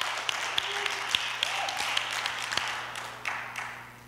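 Audience applauding, scattered clapping that dies away about three seconds in.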